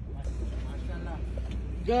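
Faint, indistinct voices over a steady low rumble, with a man starting to speak loudly near the end.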